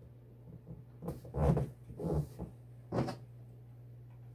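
Paper and tape being handled by hand on a T-shirt: a handful of short rustling, scraping sounds between about one and three seconds in, over a steady low hum.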